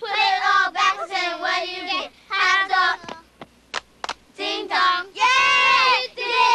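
Young girls singing a playground handclapping chant in sing-song phrases, with sharp hand claps in the gaps between phrases. About five seconds in, the voices get louder and longer.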